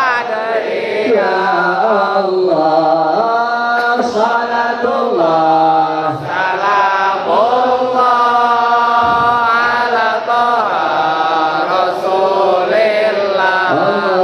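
A man singing an Arabic sholawat (devotional chant in praise of the Prophet) into a microphone, in long held notes that slide from pitch to pitch with short breaths between phrases.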